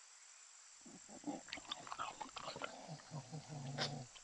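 A black-tailed deer browsing on leafy shrubs: faint, irregular soft crackles and rustles of leaves being pulled and chewed, starting about a second in. A short low hum sounds near the end.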